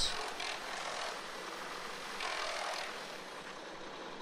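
Steady outdoor background noise like a distant running engine, with a soft swell about two seconds in.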